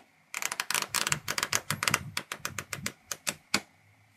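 A stack of printed cards riffled under the thumb, the card edges flicking off one after another in a rapid run of clicks that thins out and spaces apart near the end.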